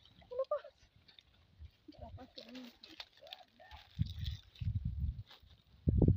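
Faint voices calling out in short gliding cries, then low rumbling bursts from about four seconds in.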